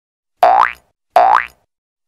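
Two identical short cartoon sound effects, each a quick upward sweep in pitch, about three-quarters of a second apart.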